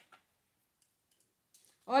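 Near silence with a faint brief click near the start; a woman's voice starts speaking just before the end.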